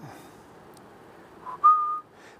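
A short whistled phrase: a brief note about a second and a half in, then a slightly higher note held for about a third of a second.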